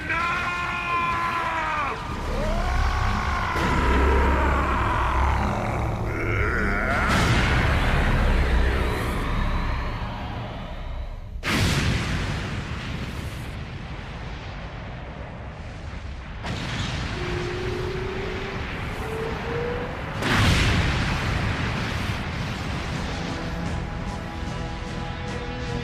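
Dramatic cartoon-battle soundtrack: music mixed with sci-fi blast and explosion effects. A deep rumbling boom runs through the first half, and there are sudden loud hits about halfway through and again near the end.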